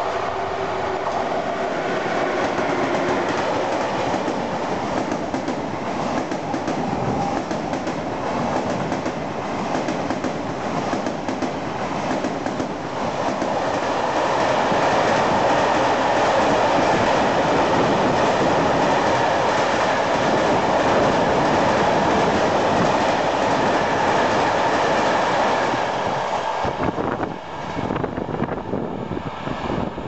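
Freight train running through a station behind an electric locomotive: the locomotive approaches with some steady tones, then the wagons pass close by with rumbling wheels and clickety-clack over the rail joints, loudest in the middle. The sound drops and changes near the end.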